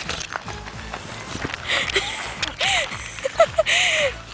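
Footsteps on an asphalt road, with the rubbing and knocking of a hand-held camera and a few short squeaky vocal sounds.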